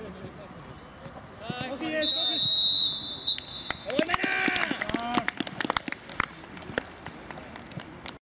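Referee's whistle blown in one long, steady, high blast of about a second, about two seconds in: the final whistle. Men's shouts from the pitch follow.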